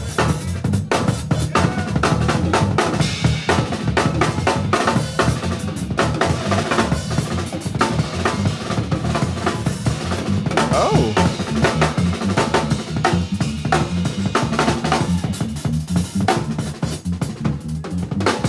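A small drum kit, just snare, tom, hi-hat and cymbals, played in dense gospel-chops patterns and fills. An electric bass line runs steadily underneath.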